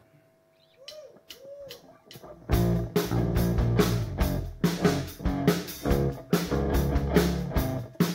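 The intro of a live song starts about two and a half seconds in: loud guitar music with a strong, even beat. Before it there is a short hush with a few faint clicks and two brief tones that rise and fall.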